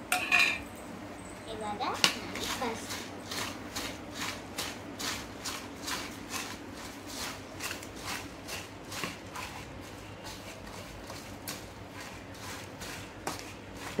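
Puffed rice being mixed and turned by hand in a steel bowl: a rhythmic dry rustle and crunch, about two to three strokes a second.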